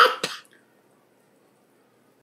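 A person's brief throat clearing right at the start, then near silence.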